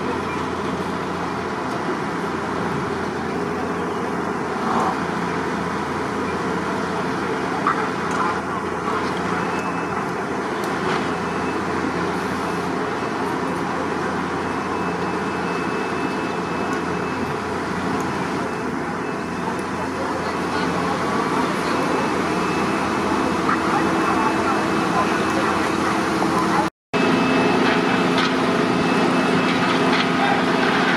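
Steady din of fire engines running at a fire scene, with indistinct voices in the background. Near the end there is a brief break, after which a low engine hum is louder.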